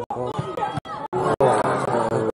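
Indistinct voices of people talking, with no clear words, broken several times by brief dropouts where the sound cuts out completely.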